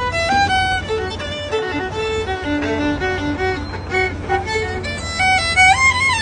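Solo violin playing a quick melody of short bowed notes, sliding up into a final held note near the end. A steady low hum runs underneath.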